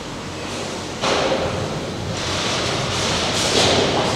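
Cleaning machine's brushes scrubbing the steel surface of a precast-concrete formwork table as it passes through, a steady hissing scrub that gets louder about a second in.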